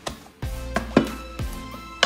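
A few short knocks as hands fold a flatbread wrap and set a ceramic plate upside down over it on a wooden board. The strongest knock comes about a second in, over background music.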